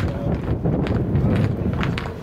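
Many studded football boots clacking on a hard walkway as a line of players walks out: irregular sharp clicks, several a second, over a low rumble.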